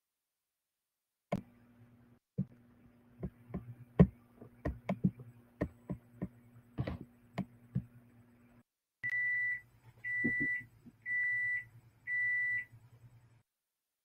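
A run of irregular clicks and taps, typical of buttons and gear being handled while a muted microphone is sorted out, over a low electrical hum. Then four short, even electronic beeps at one pitch, about one a second.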